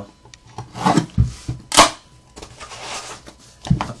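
Cardboard trading-card boxes being handled by hand and slid out of a case: rubbing and scraping, with one sharp, brief scrape just before two seconds in and a knock near the end.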